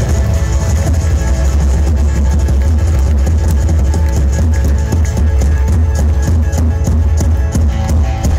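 Folk-rock band playing live and loud: accordion, electric guitars, bass guitar and drum kit together, with a heavy bass and a steady drum beat.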